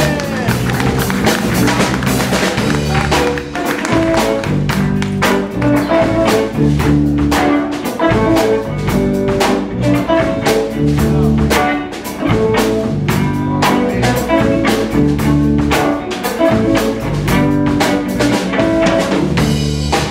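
Live blues band playing an instrumental passage with no vocal: electric guitar, bass guitar and a drum kit keeping a steady beat.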